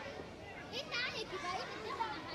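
Children's voices, chattering and calling out over one another, with a louder high-pitched shout about a second in.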